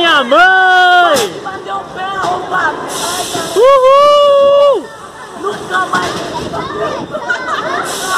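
Riders on a swinging amusement ride screaming: two long, high-pitched whoops of about a second each, one at the start and one near the middle, with scattered shouts and chatter between.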